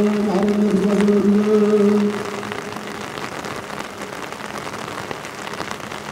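A long, slightly wavering held note of deep male chanting that stops about two seconds in. Then steady rain falls, with faint drop taps.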